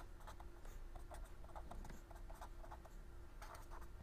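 Faint scratching of handwriting, in many short strokes.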